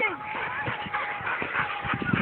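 Children's voices and shouts in the background, with a long steady high tone held through most of the moment.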